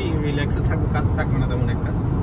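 Steady road and engine noise heard from inside a car's cabin while cruising at highway speed, a low even rumble, with a man's voice talking over it.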